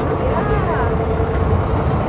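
Boat motor running with a steady low rumble. A faint voice is heard briefly about half a second in.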